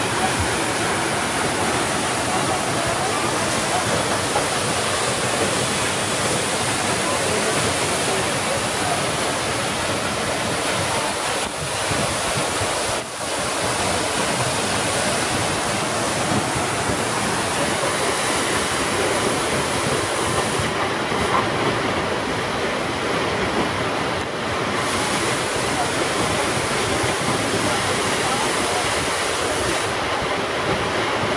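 Rinka waterfall, a tall, narrow fall plunging down a rock face, giving a loud, steady rush of falling water.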